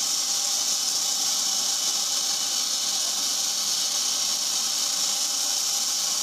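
A steady high hiss with no rhythm or knocks.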